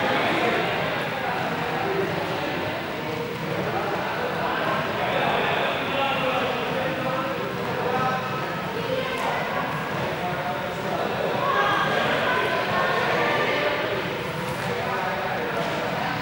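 Indistinct chatter of several voices talking at once, echoing in a large sports hall, running on without a break.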